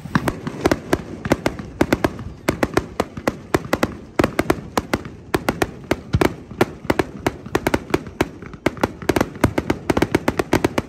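A multi-shot firework firing a rapid, uneven string of sharp pops, about four or five a second, without a break.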